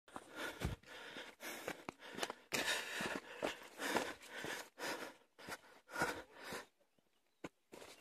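A runner's footsteps on a rocky dirt trail and hard breathing, in uneven bursts about twice a second, pausing for about a second near the end apart from a single click.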